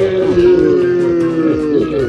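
A person's long, held yell at a steady pitch, sagging and breaking off near the end.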